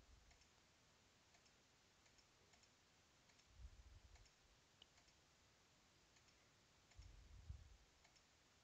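Faint computer mouse clicks, about one a second, as points are clicked in one by one. Two brief low thumps come in, one about halfway through and one near the end.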